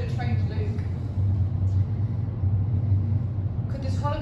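A steady, deep background hum, with a few soft spoken words at the very start.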